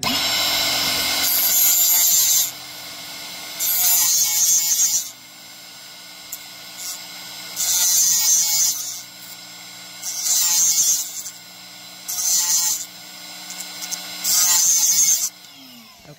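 The carbide teeth of a Diablo oscillating multi-tool blade being ground on the spinning grooved grinding wheel of a Tiger's Teeth blade sharpener. There are about six bursts of high grinding noise as the blade is pressed into the wheel, over the steady hum of the sharpener's motor, which winds down in pitch near the end.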